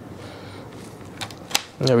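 A couple of small plastic-and-metal clicks, about a second in and again a moment later, as a USB Type-A plug is pushed into a laptop's USB port, over quiet room tone.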